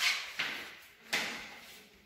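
Footsteps on a bare tiled floor: about three irregular knocks, each trailing off in a short echo.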